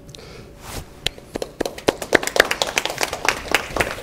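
Small group of people applauding, starting about a second in and building into steady clapping.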